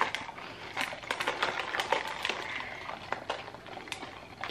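Ice cubes clicking and rattling against a clear plastic cup of iced latte as the drink is stirred with a straw, in many short, irregular ticks.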